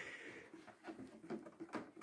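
Faint handling sounds, a few soft knocks and rustles, as a hand reaches into an upright vacuum cleaner's open bag compartment and grips the cloth bag; the vacuum itself is not running.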